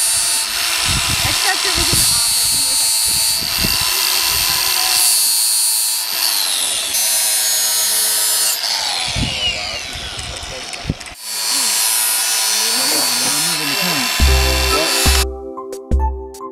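Cordless power tool grinding on the steel blade of a trail-crew hand tool, a loud hissing whine with steady high tones that winds down in pitch at times; background music with a heavy beat takes over near the end.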